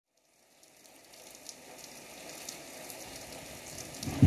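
Faint vinyl-record surface noise: crackle and hiss with scattered pops, fading in from silence.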